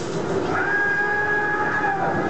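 Hiss of many water jets spraying, with crowd noise underneath, and one held high-pitched note that rises in about half a second in and lasts over a second.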